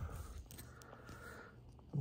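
Faint handling noise as fingers work at the edge of a clear plastic air-compression wrist bandage: a few soft clicks and light scraping.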